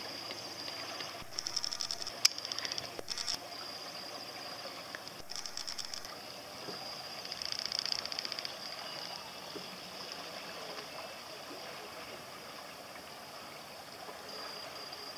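Water lapping and gurgling, with a steady high-pitched tone running under it and three short spells of fast buzzy ticking.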